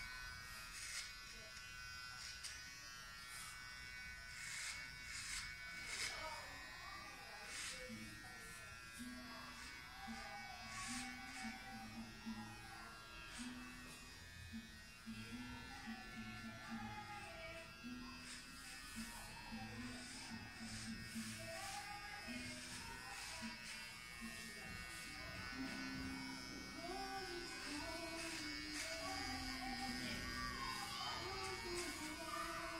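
Electric hair clippers running with a steady high buzz while cutting hair short. A voice is heard faintly in the background from about eight seconds in.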